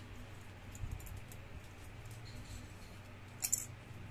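Faint scuffling and clicks of a dog play-fighting with a smaller pet, with one short, sharp scratchy rustle about three and a half seconds in.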